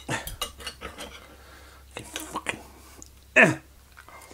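Knife and fork scraping and clicking on a ceramic plate as a rasher of bacon is sawn through, in scattered bursts. A short vocal sound about three and a half seconds in is the loudest thing.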